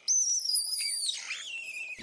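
Banded mongooses screeching: a thin, high-pitched, whistle-like call that slowly sinks in pitch, then drops lower about halfway through and carries on.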